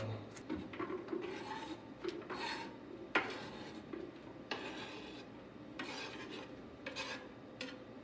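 Chef's knife chopping green onions on a cutting board, then scraping the chopped onions off the tilted board with the blade: a run of short knife strokes and rasping scrapes, with one sharp knock about three seconds in.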